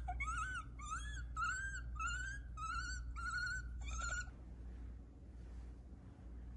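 A small pet creature squeaking: a run of about eight short, high, pitched squeaks, each bending up and down, about two a second, stopping a little after four seconds in.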